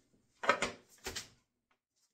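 Two wooden knocks about half a second apart: a small wooden heart-shaped box being handled and knocked against a workbench.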